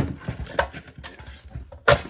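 Sheet-steel water-heater housing and copper heat exchanger clanking and rattling as they are knocked and worked apart, with a loud sharp metal knock at the start and another near the end.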